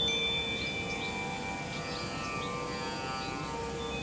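Soft ambient background music of sustained, chime-like ringing tones, with a high note struck just after the start that slowly fades.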